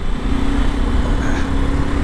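Sport motorcycle cruising at a steady speed: its engine hums at a constant pitch under heavy wind rush on the rider's microphone.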